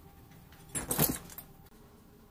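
A brief metallic jangle, a quick cluster of clicks and rattles lasting about half a second, about a second in.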